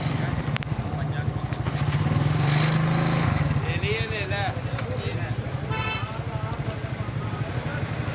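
A small motorcycle engine running close by with a steady low hum, a little louder for a moment about two to three seconds in, under background voices.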